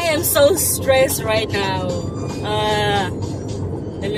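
A woman singing, with held, gliding notes, over music and the steady road noise of a moving car.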